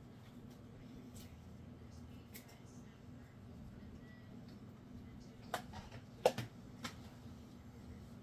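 Gloved hands peeling cooked beets over a plastic tub: a few soft clicks and taps, the loudest three about five and a half to seven seconds in, over a low steady hum.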